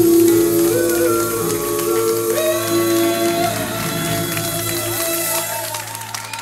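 Live vocal harmony group with band backing, several voices holding a long closing chord. The chord stops shortly before the end, finishing the song.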